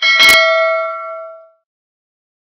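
A subscribe-button notification sound effect: one bright bell ding with a sharp click in it, ringing out and fading away within about a second and a half.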